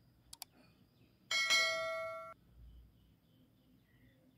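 Two quick clicks, then a bright bell ding that rings for about a second and cuts off abruptly: the sound effect of an animated subscribe-button and notification-bell overlay.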